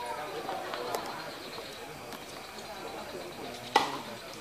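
A tennis ball struck by a racket, one sharp loud pop shortly before the end, over a background of voices chattering; a fainter click about a second in.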